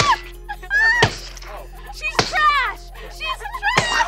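Water balloons striking and bursting against a person about four times, each hit followed by a short falling yelp, over background music.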